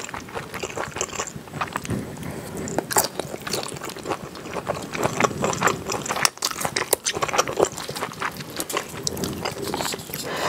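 Close-miked chewing of a mouthful of spicy kimchi pasta, with irregular wet mouth clicks and smacks.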